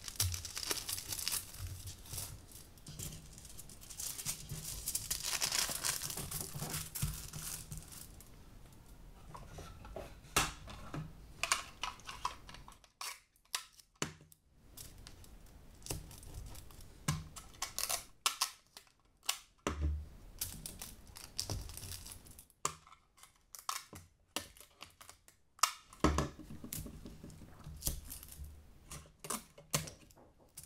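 Aluminium kitchen foil being folded and pressed down over a plastic sheet, crinkling steadily for the first several seconds. After that come scattered sharp crackles and rips as adhesive tape is pulled from a dispenser and stuck down over the folded foil.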